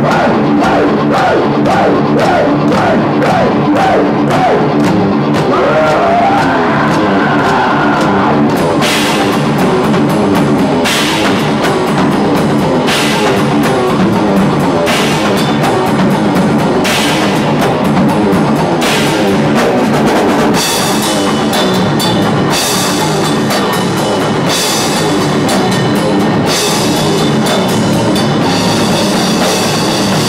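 Heavy metal band playing live: distorted electric guitar over a full drum kit. From about nine seconds in, cymbal crashes land about every two seconds.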